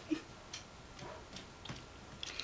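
Quiet room with a few faint, irregular ticks or clicks, about half a second apart.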